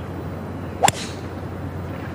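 A golf club strikes the ball in a full swing: one sharp crack about a second in.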